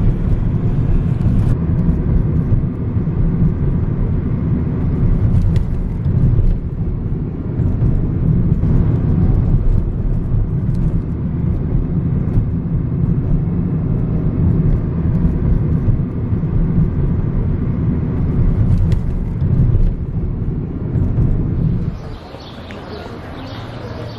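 Steady low rumble of road and engine noise heard from inside a car driving through city streets.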